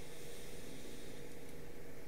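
Room tone: a steady low hiss with a faint steady hum underneath, and no distinct sounds.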